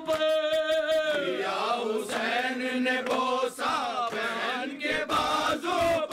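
A man chanting a noha, a Shia mourning lament in Urdu, unaccompanied into a microphone: long held notes that slide down into the next phrase, with other voices joining in places.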